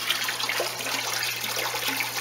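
A steady stream of water pouring from a tube into a stock tank of water, splashing and bubbling at the surface.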